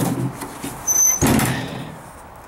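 1995 Dodge Ram pickup tailgate being opened: a brief high squeak from the handle and latch about a second in, then a loud clunk and rattle as the tailgate swings down and stops.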